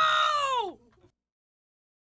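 A voice drawing out a long "wow", its pitch sliding down as it ends just under a second in.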